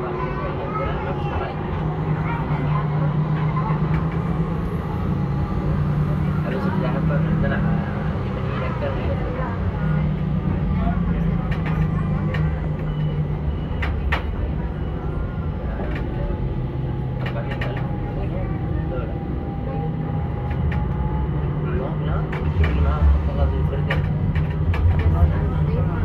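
A tram running along its route, heard from inside: a steady low rumble with a faint whining tone that shifts in pitch, and a few sharp clicks about halfway through. Passengers talk over it.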